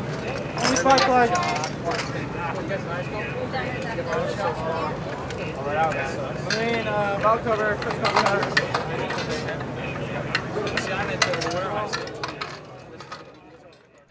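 People talking and calling out over a steady low hum, mixed with frequent short metallic clinks of hand tools and parts as a small-block Chevy engine is taken apart on its stand. The sound fades out near the end.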